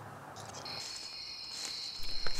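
Crickets chirping in a steady high trill that begins about half a second in, over faint outdoor background hiss.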